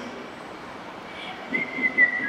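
Low background hum for most of the moment, then near the end high, pure whistle-like notes: one held note that steps down twice in pitch, the start of a simple melody.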